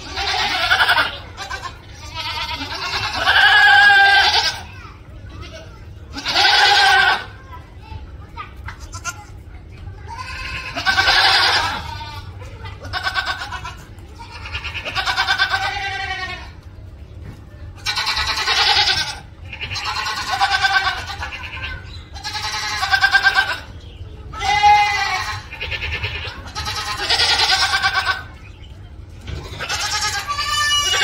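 A goat screaming: about a dozen loud, wavering bleats, each from half a second to two seconds long, coming every two to three seconds.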